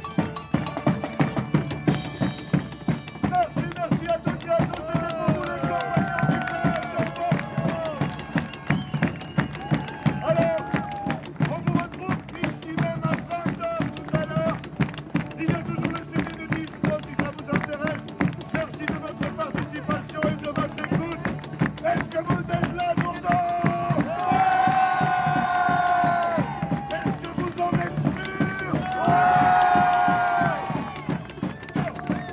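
A live medieval folk band playing: a steady beat on large drums under a bowed nyckelharpa melody and a plucked string instrument. Voices join in loudly twice near the end.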